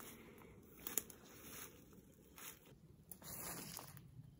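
Faint rustling and handling noises in dry leaves and camouflage clothing as a hunter lifts and positions a dead whitetail buck, with a single light tick about a second in.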